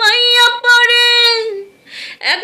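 A woman singing a Bengali folk song unaccompanied, holding one long steady note that fades out after about a second and a half, then a short pause near the end.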